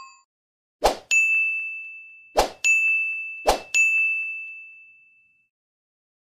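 Three bell-like dings, about one, two and a half, and three and a half seconds in. Each is a short knock followed by one high ringing tone that fades away over a second or more; the last fades out just past the fifth second.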